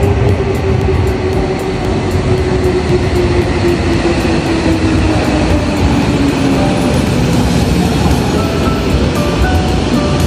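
Subway train pulling into the platform: a rumble of wheels and cars, with the motor's whine falling steadily in pitch over the first several seconds as it brakes. Background music plays along.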